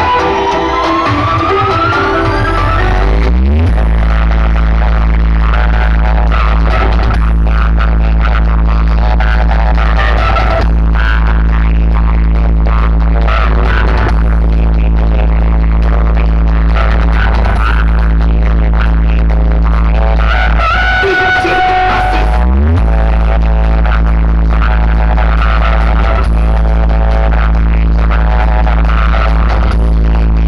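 Loud electronic dance music on a large DJ sound system, with a heavy, steady bass. A rising sweep builds over the first few seconds before the bass drops in. The bass cuts out about 21 seconds in and drops back a second or two later.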